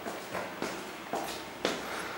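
Footsteps climbing stairs with carpet-runner treads, a soft knock about every half second.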